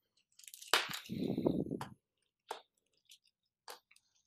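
Clay hydro grains crunching and clicking as they are pushed by hand into a small plastic net basket. A rustling crunch runs through the first two seconds, then a few separate light clicks follow.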